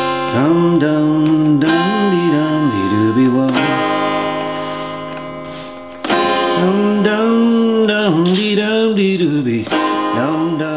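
A semi-hollow Gibson electric guitar, played upside down, strummed in a few chords that ring out; one chord fades away over about two seconds before the next is struck. A man's voice sings or hums along, wavering up and down in pitch.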